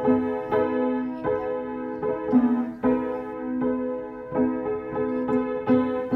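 Acoustic upright piano played by a young child in a slow, simple self-made tune. Notes are struck about every half second and each rings on, over a low note that comes back again and again.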